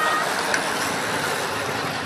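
A bunch of road-racing bicycles passing close by, giving a steady rushing noise of tyres and air.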